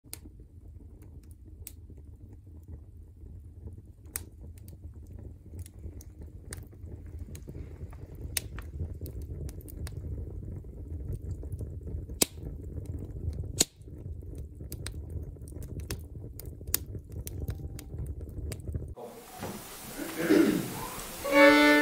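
Wood fire crackling in a stove firebox with its doors open: scattered sharp pops and snaps over a low steady rumble, with two louder pops about twelve and thirteen and a half seconds in. The fire sound stops suddenly about a second before the end.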